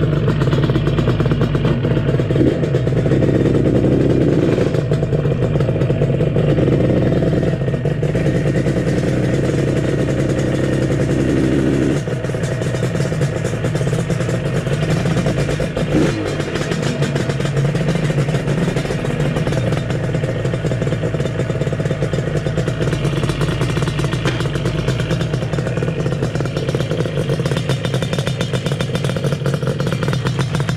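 Yamaha RD350's air-cooled two-stroke parallel-twin engine running steadily at low speed as the bike is ridden slowly, with no sharp revving. About twelve seconds in it drops a little in level and depth, and there is a brief click a few seconds later.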